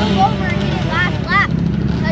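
Steady low drone of dirt bike engines running, under scattered voices.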